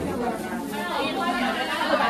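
Overlapping chatter of several voices talking at once.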